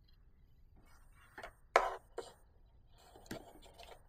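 Light handling sounds of soldering tools on a workbench: a few soft knocks and clicks, the loudest a little under two seconds in, with some rustling near the end.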